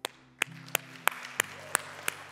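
The worship band's music ending on a held low keyboard pad chord, over a sharp, evenly spaced beat of about three strikes a second.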